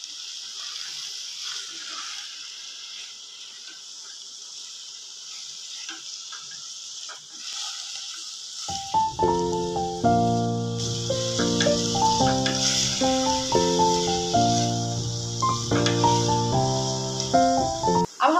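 Sliced button mushrooms and onions sizzling in butter in a saucepan as they are sautéed and stirred with a silicone spatula. About nine seconds in, background music with held notes comes in and stays over the sizzle as the louder sound.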